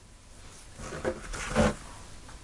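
Deck of tarot cards being picked up and handled on a cloth-covered table: soft rustling and sliding, loudest a little past the middle.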